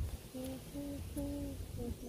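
Someone humming a tune: a string of short held notes at a low pitch, stepping up and down from note to note, beginning about half a second in.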